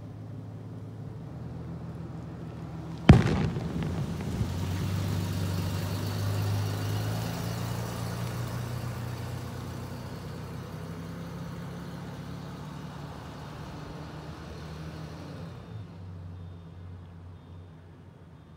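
Street traffic at night: a steady low engine hum, with one sharp bang about three seconds in, followed by a vehicle's passing noise that swells over the next few seconds and fades away.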